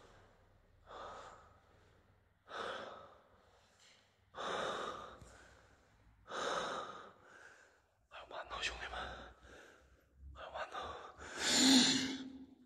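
A person breathing heavily close to the microphone, one loud breath about every two seconds. There are a few short clicks around eight to nine seconds in, and the loudest, gasp-like breath comes near the end.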